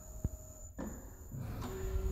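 ABM dough depositor running with its conveyor carrying a tray under the nozzles: a low steady machine hum, with one short tick about a quarter second in.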